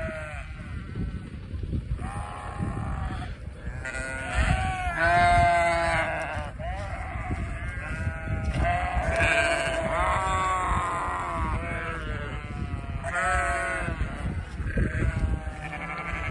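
A flock of sheep bleating, many calls overlapping one after another, the loudest about five seconds in.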